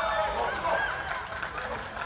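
Several people shouting and calling out at once at a football match, their voices overlapping with no clear words.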